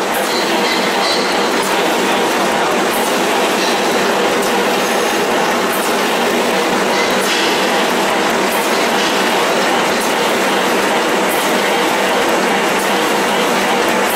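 CDH-210F-2 handkerchief tissue paper machine line running: a loud, steady mechanical clatter, with sharp clicks at irregular intervals.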